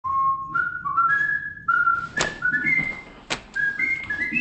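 A person whistling a tune, one clear note stepping to the next, with two sharp taps about two and three seconds in.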